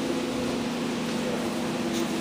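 Steady mechanical hum with a constant low drone and an even rushing noise behind it.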